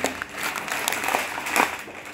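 Foil coffee bags crinkling as they are handled, a dense irregular crackle.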